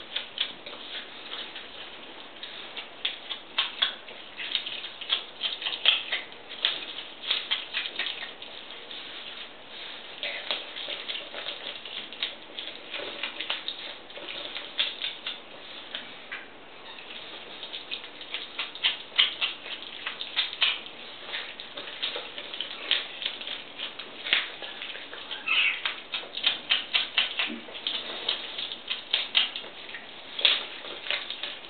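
Eurasian otter chewing and crunching a raw fish, a rapid irregular run of wet clicks and crunches in bursts with short pauses.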